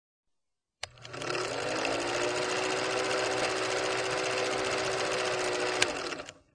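Film projector sound effect: a click, then the motor spins up into a steady, fast clatter of film running through the projector, with a sharp click near the end.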